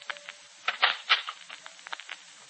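Steady hiss of an old radio broadcast recording, with a quick cluster of sharp clicks about a second in.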